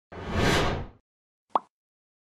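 Logo-animation sound effects: a swish lasting about a second, then a single short plop about a second and a half in.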